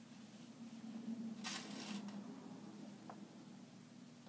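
Faint rustle of pleated fabric being handled and pinned, with one louder rustle about a second and a half in, over a steady low room hum.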